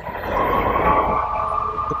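A siren sounding as a steady tone that rises slowly, over a haze of traffic noise.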